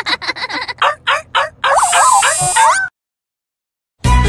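Cartoon children laughing together in quick bursts. About a second and a half in, a short sound effect follows, with sliding, warbling tones over a bright hiss. It cuts off to silence just before three seconds in.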